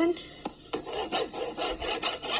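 A toddler scribbling with a crayon on paper: quick, irregular scratchy strokes that start about three quarters of a second in.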